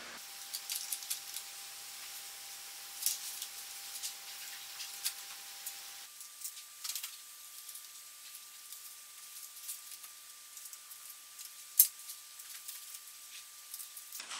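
Faint, light clicks and taps of thin wooden kit pieces being handled and pushed into the slots of a model ship's hull frame, with one sharper click near the end. A faint steady high tone runs underneath and steps up in pitch about halfway through.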